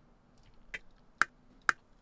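DAW metronome clicks at a steady two a second, the count-in before recording starts.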